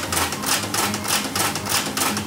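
Newman's 'Big Eureka' energy machine running: rapid, even clicking over a steady low hum.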